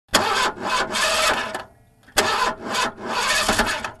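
A car's starter motor cranking the engine in two attempts, each about a second and a half long, with a short pause between them.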